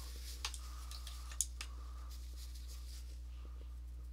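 Steady low electrical hum with a few faint scratchy strokes and two short clicks, the sharper one about one and a half seconds in.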